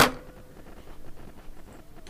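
Faint steady hiss with a thin, quiet hum, and no distinct events.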